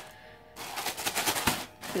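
Plastic mailer bag crinkling as it is handled: a quick run of small crackling clicks lasting about a second, starting about half a second in.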